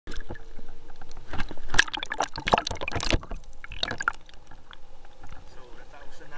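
Sea water splashing around a camera at the surface, a quick run of splashes over the first three seconds and another burst about four seconds in, then softer lapping.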